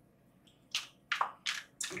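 A tarot deck being shuffled by hand: after a silent start, about four short, soft snaps and swishes of cards in quick succession.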